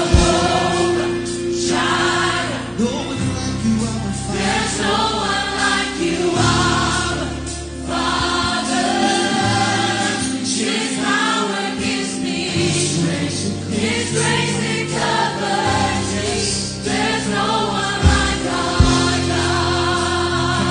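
A man and a woman singing a gospel worship song with a choir, over keyboard and long held bass notes. Two sharp hits sound near the end.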